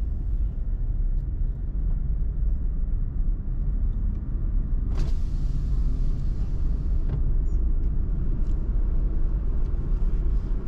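Car driving on the road, heard from inside the cabin: a steady low rumble of engine and tyres. About halfway through, a sudden rush of hiss comes in and fades over about two seconds.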